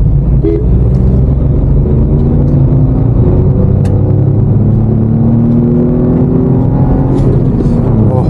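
The 2024 Maruti Suzuki Swift's three-cylinder Z-series petrol engine pulls under acceleration while driving, heard from inside the cabin. Its note climbs slowly in pitch over several seconds over a steady low road rumble.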